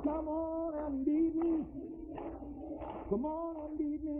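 Singing voices carrying a song in long held notes, with short breaks between phrases.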